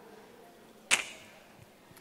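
A single sharp click from a handheld microphone being handled, about a second in, against quiet room tone.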